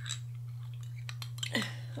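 Metal teaspoon clinking lightly against the inside of a drinking glass as a drink is stirred: a few scattered clinks over a steady low hum.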